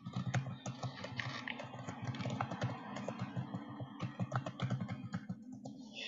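Rapid, irregular clicking of typing on a computer keyboard.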